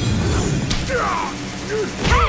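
Sound effects of a fight in an animated action scene: a sharp swish at the start, then a hit and short effort grunts.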